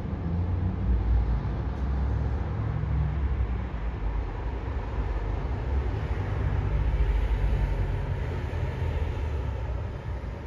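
Steady, dense rumbling noise with a heavy low end and no clear rhythm or tone.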